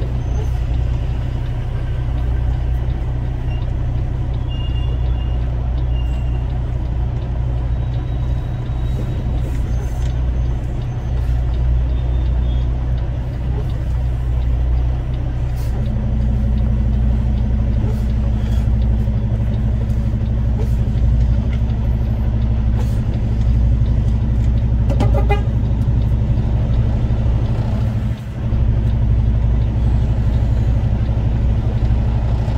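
Steady low rumble of a vehicle engine and road noise, heard from on board a slowly moving vehicle. A second, higher steady hum joins about halfway through, and the level drops briefly near the end.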